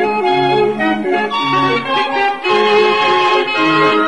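Chilean street barrel organ (organillo) playing a tune: steady held pipe notes over a bass that alternates between two low notes in a regular rhythm.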